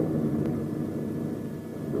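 Piston engines of a twin-engine propeller aircraft droning steadily in flight, easing off slightly toward the end.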